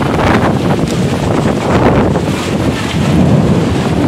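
Storm wind buffeting a phone's microphone: a loud, steady, rumbling rush of noise.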